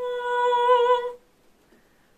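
A man's singing voice holds one high note, wavering with a slight vibrato, over a sustained note on a Yamaha CP4 Stage piano. Both stop about a second in.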